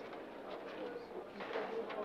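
A man's voice at a microphone, faint and hesitant: soft murmured sounds between phrases rather than clear words.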